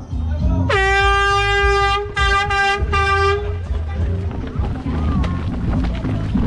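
Handheld air horn blown as the race start signal: one long blast rising quickly to a steady pitch, followed by three short blasts.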